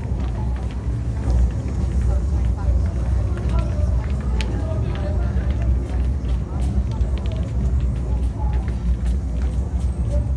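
Busy city-street ambience: a steady traffic rumble under a murmur of voices, with scattered sharp clicks of shoes on a wooden dance floor.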